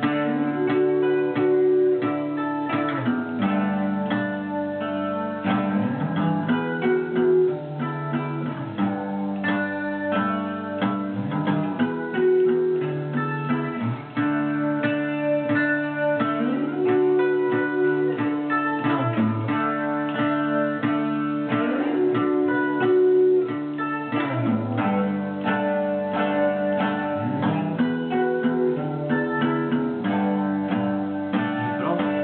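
Guitar music: an electric guitar with a Stratocaster-style headstock played with sliding notes, in a phrase that comes round about every five seconds.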